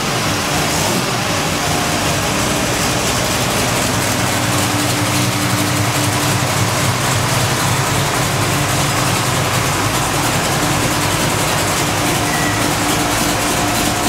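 A 496 cubic-inch big-block Chevrolet V8 running steadily at idle, with no revving.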